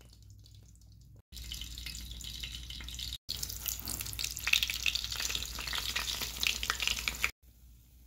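Beaten eggs frying in hot oil in a skillet, a steady sizzle packed with fine crackles. It comes in abruptly after a quiet first second, breaks off briefly near the middle, and crackles loudest in the second half before cutting off shortly before the end.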